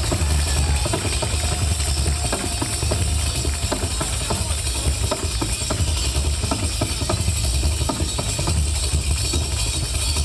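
Live band music through a PA, with a deep bass pulsing in long notes about every second and a half. Frame-drum (tamburello) strokes and jingles run over it.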